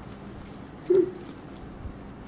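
Faint rustling and small clicks of aluminium foil and cardboard as a metal brad is worked through them by hand, with one short pitched sound about a second in.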